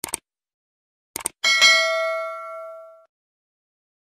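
Subscribe-button sound effect: a quick double click, another double click about a second later, then a single bell ding that rings for about a second and a half and fades away.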